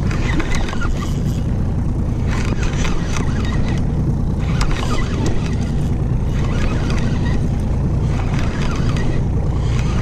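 2017 Evinrude E-TEC 90 hp outboard engine idling steadily with a low rumble, while a spinning reel is cranked to reel a hooked fish up from a vertical jig.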